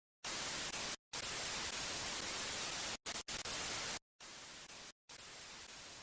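Television static hiss, chopped by brief dropouts about once a second, dropping quieter about four seconds in.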